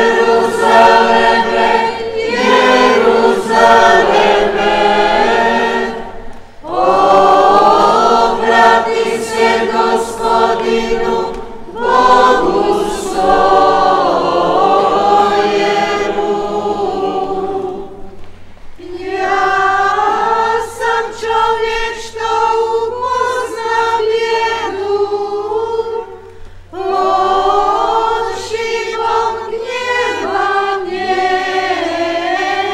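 A choir singing a hymn in long sustained phrases, with brief breaks between the lines.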